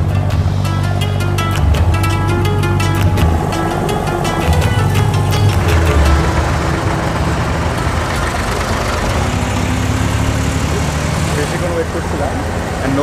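Diesel engine of a wooden abra water taxi running steadily, with water and wind noise. Background music with a beat plays over roughly the first half.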